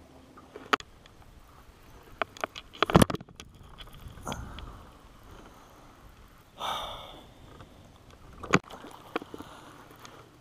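Sparse sharp clicks and knocks from handling a baitcasting rod and reel in a boat, the loudest about three seconds in and another near the end. Two short breathy exhalations come about four and seven seconds in.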